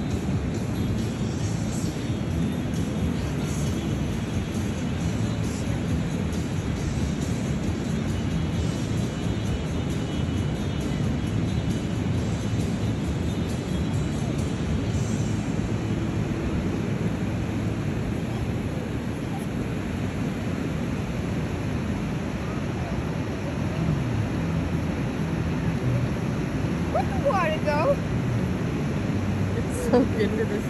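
Steady rush of ocean surf and wind on a phone microphone. Near the end a child's voice comes in briefly.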